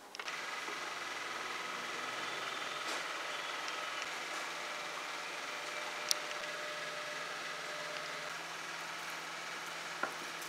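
A steady machine-like hum with faint high whining tones, holding level throughout, with one sharp click about six seconds in.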